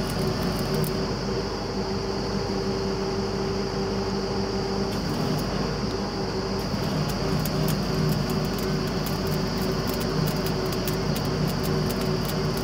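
Truck-mounted borewell drilling rig running steadily, its engine and air compressor giving a constant low hum with a steady whine above it. A rapid faint crackle comes through in the first second and again over the second half.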